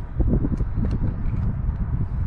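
Wind buffeting the camera microphone: a loud low rumble with irregular knocks.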